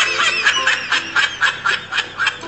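High-pitched giggling laughter: a quick run of short rising-and-falling calls, about four or five a second.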